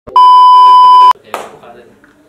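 Loud, steady, single-pitched test-tone beep lasting about a second and cutting off sharply, the tone that goes with TV colour bars, used here as an editing effect. A short rush of noise follows just after it.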